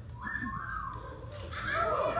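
A single short whistle that glides up, holds for about half a second and drops away, followed about a second later by the start of a song with singing.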